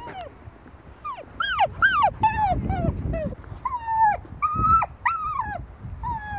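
Spaniel whining over and over: about ten short, high whines, each falling in pitch, starting about a second in.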